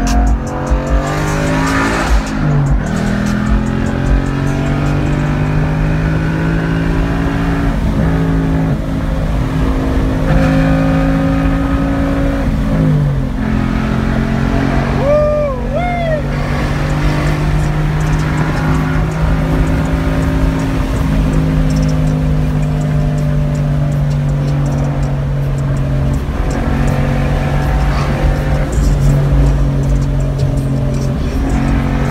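Ford Mustang's 5.0 Coyote V8 running steadily at highway cruise, heard from inside the cabin. Its pitch drops twice, about two and a half seconds in and again about thirteen seconds in, as with upshifts of the six-speed manual.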